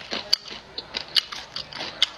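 Close-up eating sounds: a person chewing and biting spicy food, with irregular sharp crisp clicks, mixed with the crinkle of a thin plastic food bag as fingers pick food from it.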